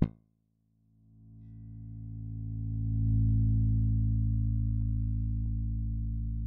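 A single low bass guitar note played through an Elysia mpressor compressor at a minus four to one ratio. The plucked attack comes through, then the note is switched off to silence by the negative compression and fades back in over about two seconds to a steady sustain, giving a backwards effect.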